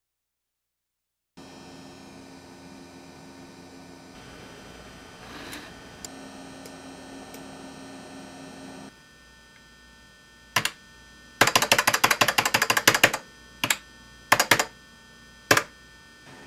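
Steady electrical hum, then keys clacking on a beige desktop computer keyboard: a single keystroke, a quick run of rapid typing lasting about two seconds, then a few separate keystrokes.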